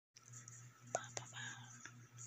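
Faint breathy whispering over a steady low hum, with two quick clicks about a second in.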